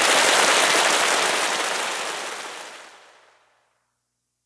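Audience applause at the close of a live-sound karaoke backing track: an even wash of clapping that holds steady, then fades out to silence about three seconds in.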